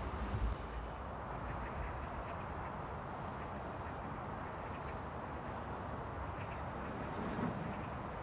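Steady outdoor ambience: an even low rumble and hiss with no distinct event, and a brief low bump about half a second in.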